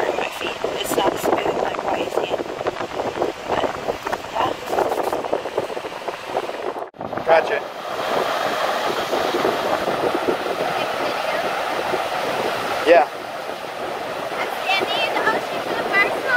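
Wind gusting over the microphone, then after a sudden break about seven seconds in, a steady wash of ocean surf mixed with wind.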